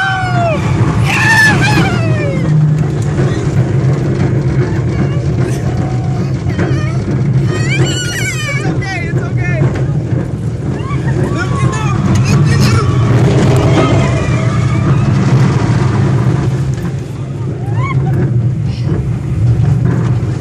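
California Screamin' steel roller coaster train running along its track with a steady low rumble, while a frightened child cries out over it: a falling wail about a second in, a high wavering cry about eight seconds in, and more crying later on.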